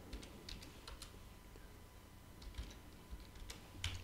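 Typing on a computer keyboard: a handful of faint, irregular key clicks as a short terminal command is entered, with a sharper click near the end.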